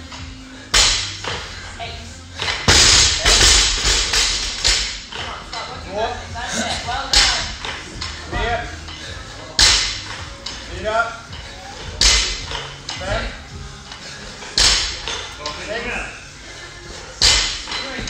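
A barbell loaded with bumper plates hits a rubber gym floor seven times over the course of repeated power snatches, each landing a sharp, heavy thud. Background music with singing runs underneath.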